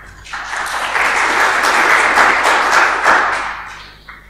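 Audience applauding: the clapping builds quickly, holds for about two seconds, then dies away near the end.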